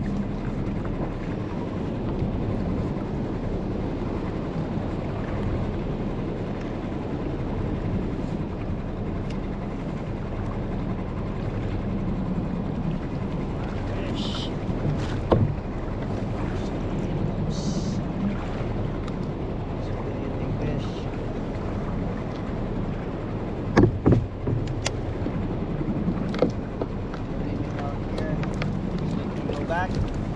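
Steady wind and water noise on a small fishing skiff, with a few sharp knocks against the boat in the second half, the loudest about two-thirds of the way through.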